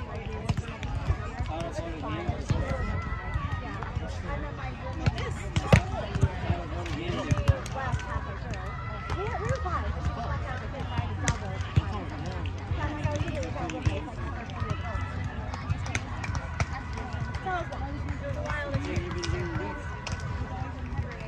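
Chatter of several voices across the volleyball courts, with a few sharp smacks, clustered about six to seven seconds in and once more about eleven seconds in, over a steady low rumble.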